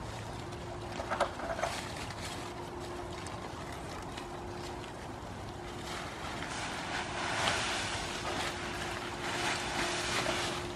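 Goats rooting through and tearing at a pile of cut leafy branches as they feed, a steady rustle of leaves. There are a few short crackles about a second in, and the rustling swells louder toward the end.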